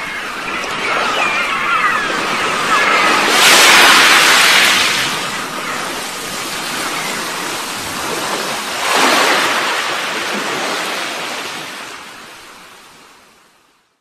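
Ocean surf: a wash of waves that swells twice, the first surge the loudest, then fades away to nothing near the end.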